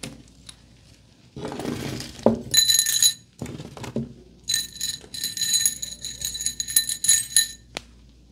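Hairstyling tools and accessories being sorted on a table: a rustle and a few knocks, then repeated small ringing clinks of hard objects in a container, a short run and then a longer one of several seconds, ringing at the same few high tones.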